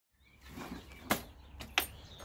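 Workshop background sound fading in, with two sharp knocks about a second in and again just over half a second later, as pieces of wood are handled on a workbench.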